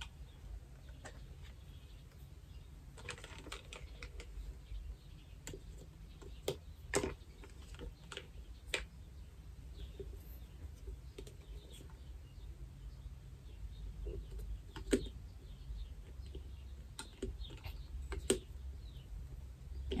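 Scattered plastic clicks and knocks as the lid and flip-up straw spout are fitted and screwed onto a one-gallon plastic water bottle, over a low background rumble.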